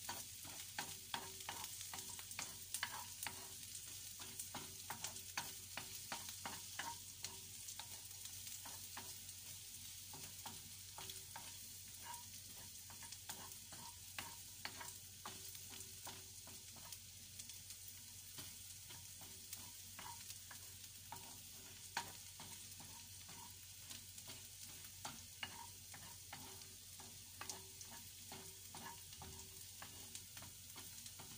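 Chopped onion frying in oil in a nonstick pan, with a light sizzle under the irregular scrapes and taps of a wooden spatula stirring it against the pan. The taps come thick and fast in the first half and thin out later.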